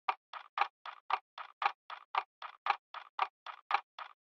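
Clock ticking fast and evenly, about four crisp ticks a second, alternating stronger and weaker in a tick-tock pattern.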